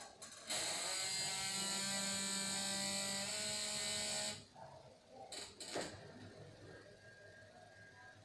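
Electric adjustable bed's backrest motor running for about four seconds as it raises the head end, its pitch shifting a little partway through, then stopping. Two sharp clicks follow about a second later.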